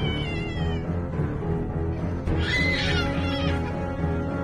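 A toddler crying in very high-pitched wails, one at the start and a longer one about halfway through, over steady background music.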